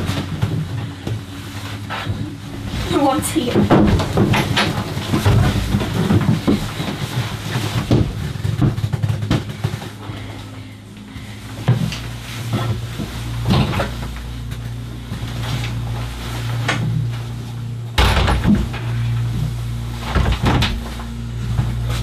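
Knocks and clatter of wooden cabin cupboards and fittings being opened and handled, with a low steady hum coming in about halfway.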